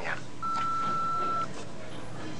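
Answering machine beep: a single steady tone lasting about a second, starting about half a second in, the signal to begin recording a message.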